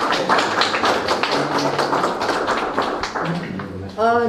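Applause: dense hand clapping that thins out near the end.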